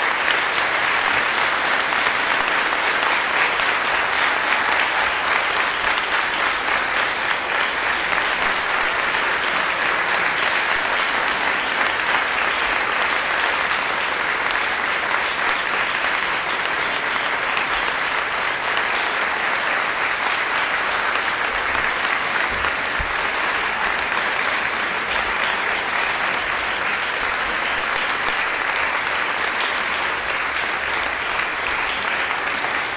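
Audience applauding, a steady dense mass of clapping that keeps an even level throughout.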